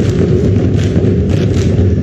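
Drums beating at a ma'ulu'ulu, Tongan seated group dance, with repeated heavy thuds over a dense low rumble and a faint held note from the singers underneath.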